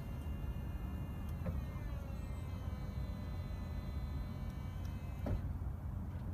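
Audi A4 Cabriolet soft-top mechanism running as the roof closes: a steady electric pump whine whose pitch drops slightly about two seconds in. Sharp clicks come just after a second in and again near the end.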